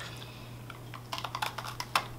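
Two people biting into hard Oreo sandwich cookies: a quick run of sharp crunches and cracks in the second half, as the firm chocolate wafers snap and break.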